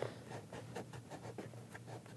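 Faint scratching and rustling of hands working at the padded fabric liner inside a motorcycle helmet, with irregular small ticks.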